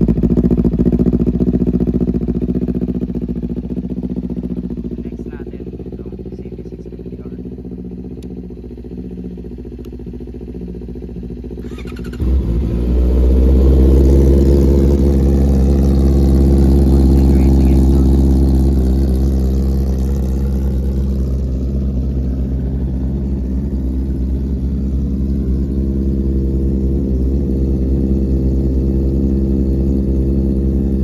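Kawasaki Ninja 400's parallel-twin engine idling on a cold start through an Orion slip-on exhaust, gradually settling quieter. About twelve seconds in, the sound switches suddenly to a Honda CB650R's inline-four engine idling cold through an Austin Racing exhaust: louder and steady.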